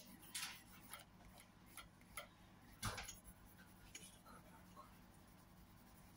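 Faint pencil on paper: irregular light scratches and taps of drawing strokes, the loudest tap about three seconds in, over a low steady room hum.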